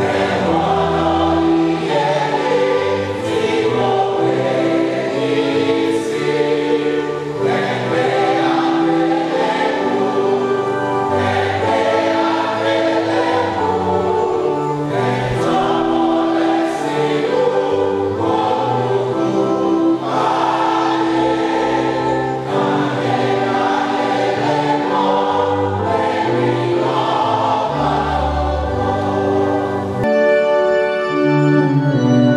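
Church choir singing a gospel hymn, many voices together in a continuous stream of song.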